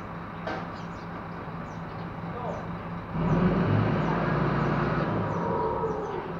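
Crane truck's diesel engine idling with a steady hum, then revving up about three seconds in and holding for about two and a half seconds before dropping back to idle, as the truck engine revs to drive the boom's hydraulics.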